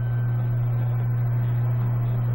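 Steady low hum with a faint hiss underneath, the background noise of an aged film soundtrack.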